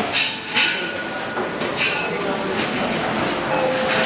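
Metal wire shopping trolley being pushed along a hard floor: a steady rolling rumble from its wheels with a few clattering rattles from the basket early on.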